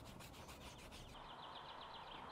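Faint rubbing of a gloved hand and applicator over a rubber tyre sidewall, working in tyre dressing with quick back-and-forth strokes. About a second in, the rubbing stops and a faint high, rapid chirping is heard.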